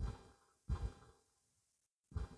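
Two short sighing breaths from a man close to the microphone, about 0.7 s apart, each fading quickly.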